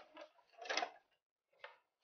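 Split bamboo strips knocking lightly against a bamboo chair frame as they are set in place: three short, faint clacks.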